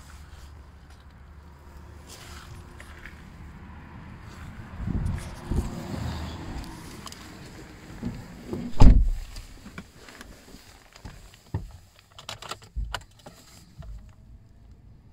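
Handling and movement noises inside a parked car: rumbling and dull thumps, with one heavy thud about nine seconds in as the loudest sound, then a few light clicks near the end.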